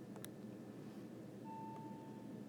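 Faint steady background hiss with a sharp click near the start, then a single short electronic beep, one steady tone lasting under a second, about one and a half seconds in.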